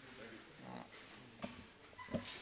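Faint, indistinct murmur of voices in a room, with a small knock about one and a half seconds in.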